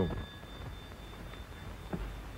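Steady hiss of an old film soundtrack, with no clear event in it apart from a single small click near the end.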